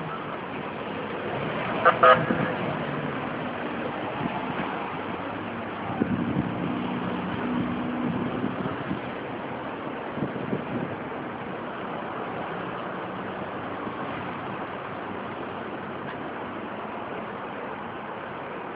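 Road traffic noise with a short car horn toot about two seconds in.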